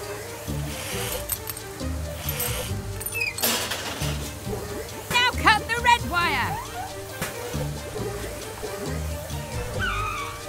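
Upbeat cartoon background music with a bouncing bass line, over water-spray and sloshing sound effects from a car wash. A whoosh comes at about three and a half seconds, and a quick run of high chirping robot voices about five seconds in.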